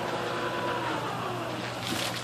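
Power liftgate of a 2013 Ford Escape opening: its electric motor runs with a steady whine that slides lower in pitch about halfway through as the gate rises toward the top.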